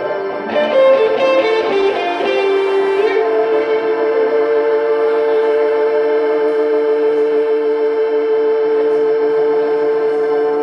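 Live blues band with electric guitars and keyboard: a quick run of notes in the first three seconds, then one long held note.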